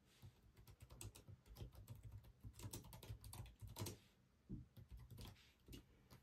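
Faint typing on a computer keyboard: a quick run of key clicks for about four seconds, then a few scattered taps.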